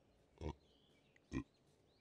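Two short, low grunts about a second apart.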